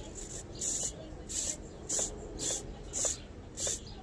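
Two Tower Pro SG90 9-gram micro servos whirring in short bursts, about two a second, as their horns swing back and forth together. Both servos are following one aileron stick through a transmitter master/slave mix, with no Y connector.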